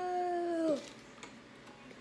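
A child's voice holding one long sung note at a steady pitch, which slides down and stops under a second in.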